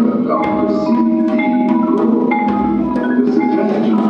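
A percussion ensemble playing, led by marimbas and other mallet keyboards ringing out repeated pitched notes over a steady pulse, with sharp drum or cymbal strikes now and then.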